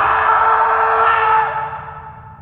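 A whistle-like tone of several steady pitches over a hiss, holding loud and then fading away in the second half.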